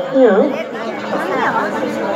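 People's voices and chatter, with a voice drawn out in wavering pitch glides.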